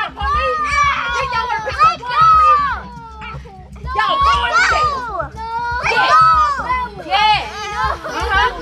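Children's voices yelling and crying out, high-pitched with wide swoops in pitch and no clear words, dropping off briefly near the middle.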